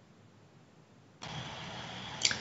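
Near silence, then about a second in a steady background hiss with a low hum switches on abruptly: the sound of a call participant's microphone opening.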